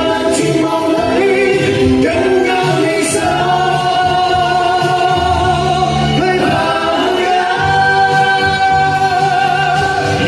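Group of singers, men and a woman, singing together into microphones through a PA. They hold one long note from about three and a half seconds in, then another from about seven seconds in.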